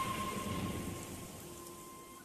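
Soft rain falling on a water surface, with a faint steady high tone running through it, fading away toward the end.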